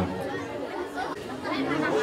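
Low background chatter: several voices talking quietly at once.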